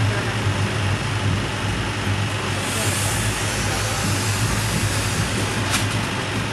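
Indian passenger train running, heard inside a sleeper carriage: a steady rumble with a low hum, a brief hiss about halfway through and a sharp click near the end.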